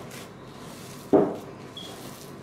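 Gloved hands kneading stiff almond dough in a glass bowl, with one short thump about a second in.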